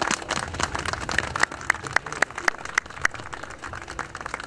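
Crowd applauding, with one pair of hands near the microphone clapping louder in an even beat of about four claps a second through the middle.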